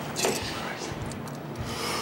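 Footsteps scuffing and scraping on stairwell steps, a few sharp treads early on and a rising scrape near the end, over a steady low drone.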